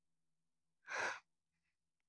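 A single short, audible breath, about a second in.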